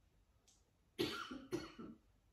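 A woman coughing twice in quick succession into her hand, after a short breath in.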